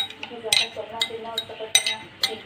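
A metal spoon clinking against a glass mixing bowl while chopped egg salad is tossed: several sharp clinks with a brief ring after each.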